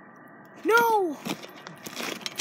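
A voice calling out one drawn-out vowel, its pitch rising then falling over about half a second, a little under a second in.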